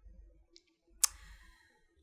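A single sharp click about a second in, with faint low room noise around it.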